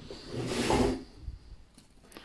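A single short scrape or rub, under a second long, rising to its loudest just before a second in, followed by a couple of faint ticks.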